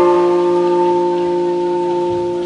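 Electric guitar chord ringing out through the amp, held steady and slowly fading with no new notes struck.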